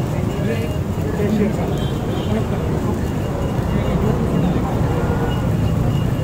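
Steady low rumble of busy outdoor surroundings, with people talking in the background.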